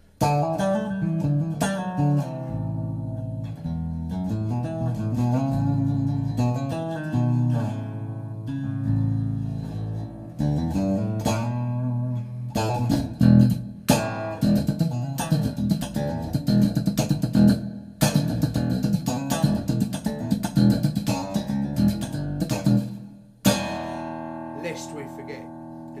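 Electric bass guitar played solo: a melodic line of sustained notes, then from about halfway a fast slap-and-pop funk run with sharp percussive strokes, ending on notes left ringing.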